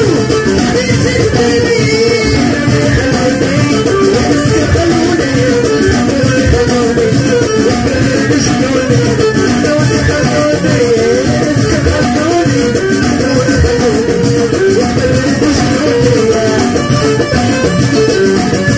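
Loud, amplified live Moroccan chaabi music: a woman sings into a microphone over a dense, steady percussion rhythm and melody instruments.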